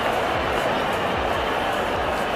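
Steady din of a large stadium cricket crowd, an even wash of noise with no single sound standing out.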